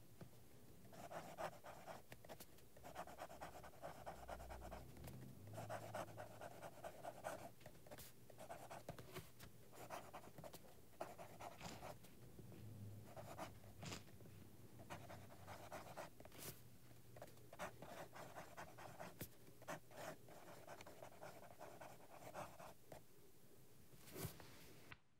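Pelikan M600 fountain pen's 14-karat gold medium nib writing on paper: faint scratching in short stretches, one word or stroke group at a time, with brief pauses between.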